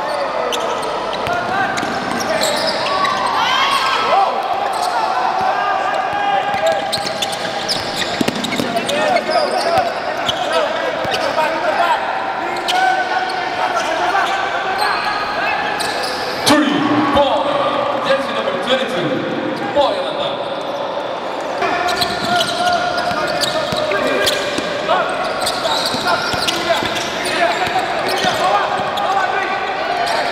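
Basketball bouncing on a hardwood court during live play, with players' and coaches' voices calling out across the gym.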